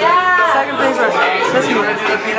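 Speech and chatter: several people talking at once, with one voice close to the microphone.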